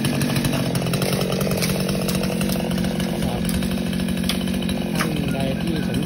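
Chainsaw engine running steadily at one even pitch, with a few sharp clicks over it.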